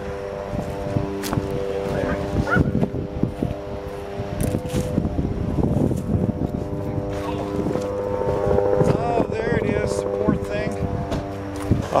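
An engine running steadily at one even pitch, fading for a moment around the middle, with a few light knocks early on.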